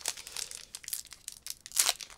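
The foil wrapper of a Pokémon TCG Paldean Fates booster pack being torn open and crinkled by hand. It makes a run of irregular crackles, the loudest near the end.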